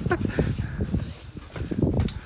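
Wind buffeting the microphone, an irregular low rumble, with the tail of a laughing voice at the very start.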